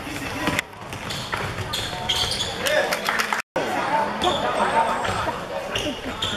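A basketball being dribbled on a hardwood court in an echoing hall, with players and spectators shouting. The sound drops out for an instant about three and a half seconds in.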